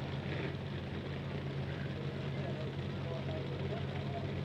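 Pickup truck engines idling at the start line, a steady low hum.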